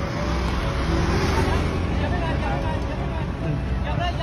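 Road traffic close by: a broad rush of tyres and engines that swells over the first second or so, over a steady low engine rumble.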